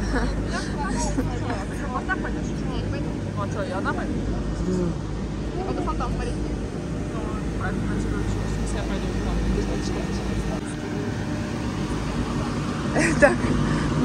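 Steady low mechanical hum of a running chairlift at its boarding station, with people talking faintly in the queue.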